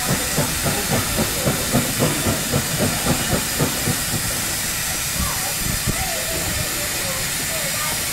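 Steam locomotive blowing off steam with a steady hiss. Over the first half a regular low beat, about three a second, runs under the hiss and then dies away.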